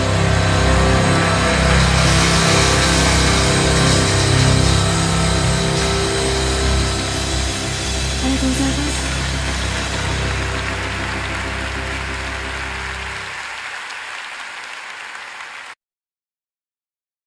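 The closing bars of a song: held chords over a steady low bass that fade out over the last few seconds. The bass drops away first, then the sound cuts off suddenly just before the end.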